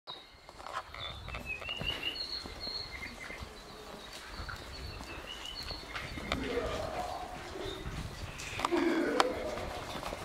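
Small birds chirping in short high notes, with footsteps and handling noise on the walkway. From about six seconds in, people's voices talking indistinctly join and grow louder.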